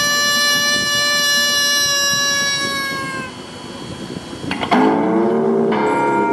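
Electric guitar (a Fender Telecaster through a small Fender tube amp) holding one long sustained note that sags slightly in pitch and dies away about three seconds in. After a short lull, a new note is picked sharply, its pitch bending upward, and another is struck just before the end.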